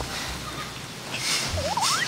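Comic sound effect added in editing: a quick warbling whistle that zigzags upward in pitch near the end, over a low background hum.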